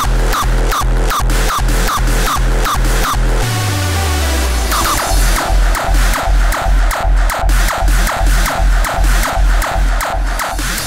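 Hardstyle track: a fast, steady kick drum at about two and a half beats a second under a synth line. About three and a half seconds in, the kicks stop for a long falling bass sweep, then return about five seconds in.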